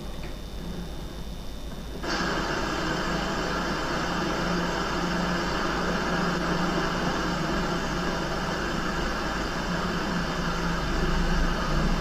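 A low steady hum, joined abruptly about two seconds in by a loud, even whirring machine noise that then holds steady.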